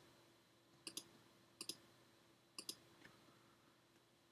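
Faint clicking of a computer mouse: short press-and-release double clicks about a second apart, three of them, over near silence.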